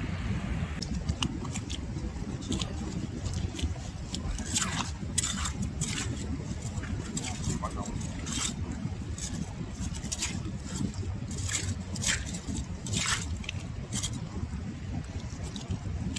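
Hand hoe (homi) digging through shelly tidal mud for Manila clams: irregular sharp scrapes and clicks of the blade against shells and grit, about one or two a second, over a steady low rumble.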